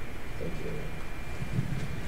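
Lecture-hall room noise: a steady low hum with a faint steady high whine, and a brief soft spoken "thank you" about half a second in.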